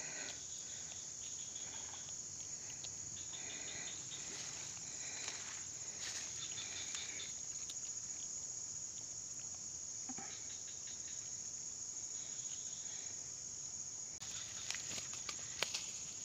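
A steady high-pitched insect chorus, like crickets, with faint intermittent chirps over it; a few soft clicks and rustles near the end.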